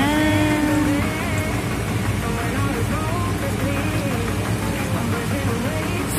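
A background song plays over the splashing and fizzing of 7 Up soda being poured from a plastic bottle onto raw shrimp and crabs in a steel pot.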